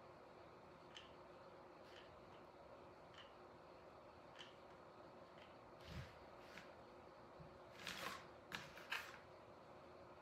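Very quiet hot glue gun work: faint, evenly spaced clicks about once a second as the trigger is squeezed, with a few louder clicks and handling knocks about six seconds in and again near the end.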